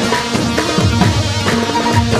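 Live Arabic band music: a percussion beat of deep, booming drum strokes under held melody lines from violin and ney.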